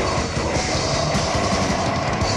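Death metal band playing: distorted guitars over fast, dense drumming.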